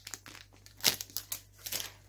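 Plastic packaging crinkling as it is handled, in a few short, irregular crackles, the loudest about a second in.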